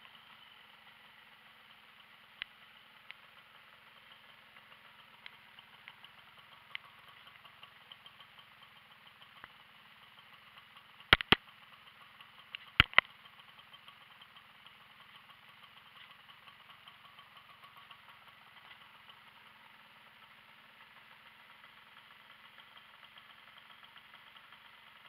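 Tomos APN 6 moped's two-stroke single-cylinder engine idling faintly and steadily, with light scattered ticks. Two pairs of sharp clicks stand out about eleven and thirteen seconds in.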